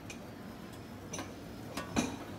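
A few light metallic clicks from stainless-steel chafing dish lids being handled on a buffet, the last and loudest near the end, over a low room hum.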